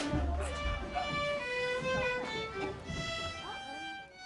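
Violin playing a melody for a stage dance, with voices underneath and a sharp knock right at the start.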